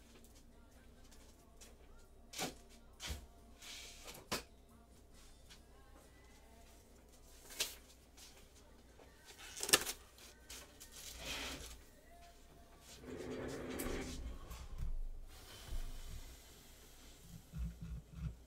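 Scattered sharp clicks and knocks a second or more apart, the sharpest about ten seconds in, with short stretches of rustling between them over quiet room tone.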